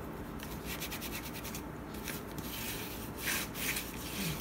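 Bone folder rubbed back and forth over brown paper glued onto cardboard, pressing it down and spreading the glue: a run of dry swishing strokes, a little louder near the end.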